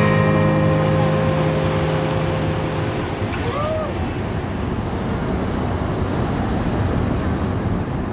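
Final acoustic guitar chord ringing out and dying away over the first few seconds, giving way to steady open-air wind and river-water noise, with a brief rising-and-falling call about three and a half seconds in.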